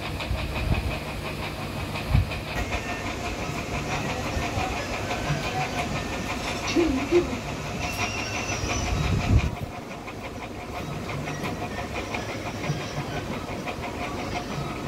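Steady machine-like hum and hiss with a few soft knocks; the background drops in level about two-thirds of the way through.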